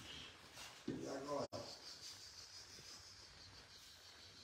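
Quiet background with one short, muffled voice about a second in; the sound cuts out for an instant at about a second and a half, then only faint hiss remains. No clear clicks of cue or balls are heard.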